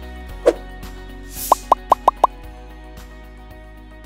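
Background music with motion-graphics sound effects: a short whoosh about half a second in, then a quick run of five plops, each falling in pitch, around the two-second mark.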